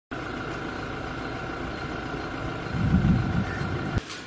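Steady mechanical hum with a low rumble and a constant high whine, swelling louder for about a second near three seconds in.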